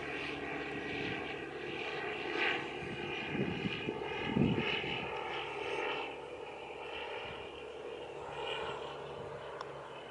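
A steady motor drone with several held tones, loudest around the middle and easing off in the second half, and a light click near the end as a putter strikes a golf ball.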